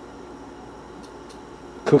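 Pot of water heating on a gas stove burner, close to 180°F: a faint steady hiss with a couple of faint ticks. A man's voice starts just before the end.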